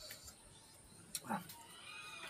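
A short animal call that falls steeply in pitch about a second in, preceded by a sharp click, over a faint background; a higher, arched call follows near the end.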